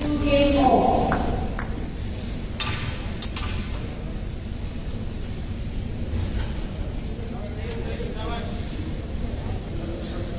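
Spectator ambience at a squash match: a voice near the start, then a few sharp knocks about three seconds in, over a steady murmur.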